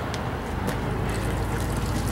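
Sludge water without flocculant trickling through a small sieve, running straight through untreated, over a steady low rumble.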